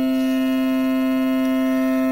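Steady musical drone held on one pitch with a stack of overtones, unbroken and even in level: the sustained accompaniment for a Sanskrit chant.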